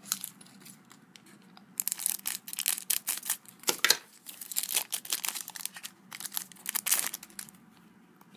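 Foil wrapper of a Panini Adrenalyn XL trading-card booster pack being crinkled and torn open by hand, in several short spells of crackling.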